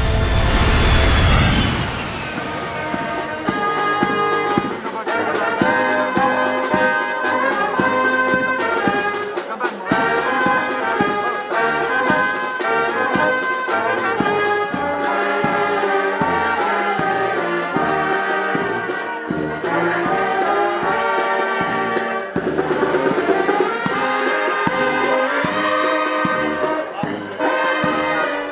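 A brass band of trumpets, trombones, sousaphone and drums playing a lively tune with a steady drumbeat. It opens with a loud, low falling sweep in the first two seconds.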